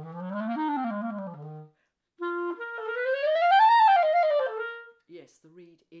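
Clarinet playing quick slurred runs up and down. The first, low run ends on a low note; after a short pause a second run climbs higher and falls back. The player says the reed is being kind, i.e. responding well.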